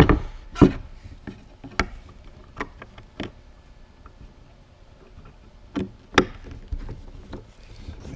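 Scattered sharp knocks and clicks of plywood parts being handled and a T-handle hex key working a bolt into a T-nut as a table-leg joint is tightened and squared up. The loudest knocks come at the very start, with a quieter spell in the middle.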